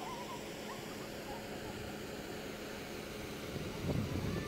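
Small birds chirping faintly over outdoor hiss and a steady low hum that fades about halfway through. A louder low rumble on the microphone comes near the end.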